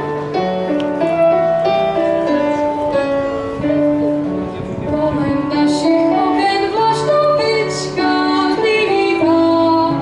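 A girl singing a Czech folk song into a microphone, accompanied by clarinet and electric keyboard. The instruments play alone at first, and her voice comes in about halfway through.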